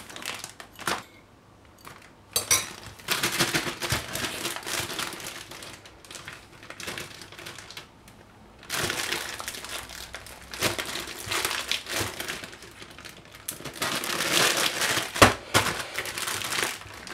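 Plastic zip-top freezer bag crinkling in long stretches as frozen seasoning cubes are spooned into it and the bag is handled and closed. A sharp click comes near the end.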